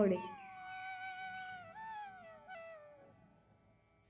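Background flute music: a slow, sustained melody sliding gently down in pitch, then fading out to near silence just before the end.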